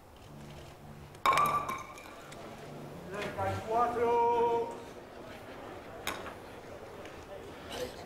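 A bolo palma ball strikes with a sharp knock and a brief ringing tone about a second in. A man's voice calls out a drawn-out shout a couple of seconds later, and a faint click follows.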